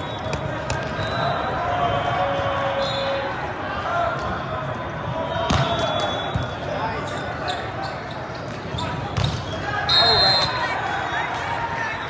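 Echoing ambience of a busy volleyball hall: voices of players and spectators from many courts, with sharp thumps of volleyballs being hit and landing. A short high whistle sounds about ten seconds in.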